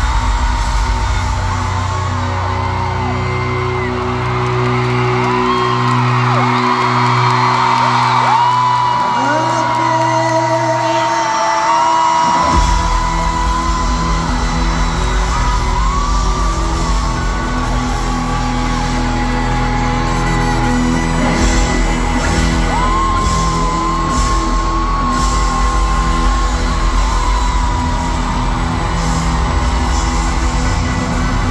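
Live band playing pop-rock in an arena, heard through a phone recording, with the crowd whooping and yelling over it. The low end thins out about six seconds in, then the full band comes back in hard about twelve seconds in.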